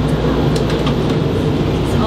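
Steady low mechanical rumble and hum of a tour bus's running machinery, heard inside the bus, with a few faint clicks.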